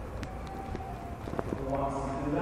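Short pause in a man's speech, filled with low room noise and a few faint clicks. His voice comes back near the end.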